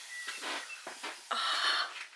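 Clear plastic protective film and wrapping rustling and crinkling as it is handled on a tabletop, with a few short crackles and then a louder stretch of rustle in the second half.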